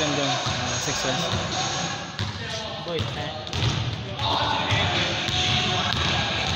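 A basketball bouncing repeatedly on a hardwood gym floor during a pickup game, with players' voices and shouts in the echoing hall.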